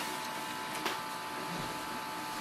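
Canon Pixma G4470 all-in-one starting a scan from its automatic document feeder: a steady motor whine sets in, with one click a little under a second in.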